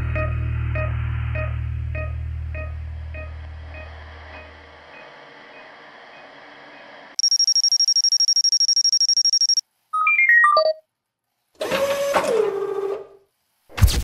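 Music fades out over the first few seconds. Electronic sound effects follow: a fast-trilling high beep for about two and a half seconds, a quick run of short stepped tones, and a burst of noise with a tone gliding downward.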